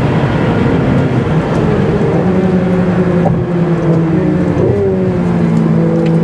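Ferrari 488 Pista's twin-turbo V8 running steadily under load at track speed, over tyre and road noise. The engine note shifts briefly about three-quarters of the way through, then holds steady again.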